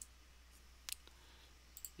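Near silence broken by a few faint clicks from working a computer: a single click about halfway through and a quick pair near the end.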